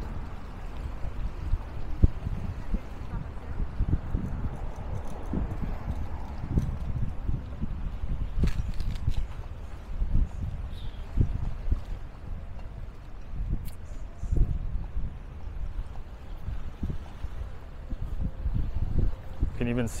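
Footsteps on a stone-paved promenade with irregular knocks, under an uneven low rumble of wind on the microphone, with faint voices in the background.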